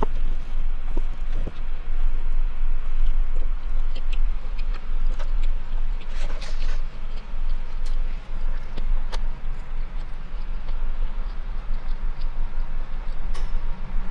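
A person chewing a large mouthful of burger, with scattered small mouth clicks and smacks, over a steady low hum inside a car.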